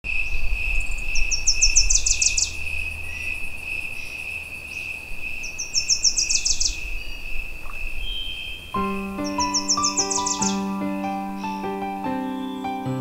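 Bird song over a steady high insect drone and a low rumble. A bird sings a short phrase of quick high notes three times, about every four seconds. Piano music comes in about nine seconds in.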